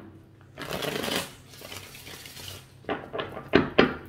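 A tarot deck being shuffled by hand: a soft rustle of cards sliding about half a second in, then a quick run of sharp card slaps and clicks near the end.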